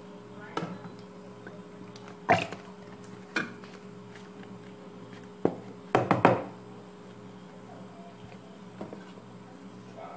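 Light knocks and clatter of kitchen handling at a metal cooking pot, a spoon against the pot and a cream carton being handled and poured: a handful of separate taps, the loudest about two seconds in and a quick cluster of them about six seconds in.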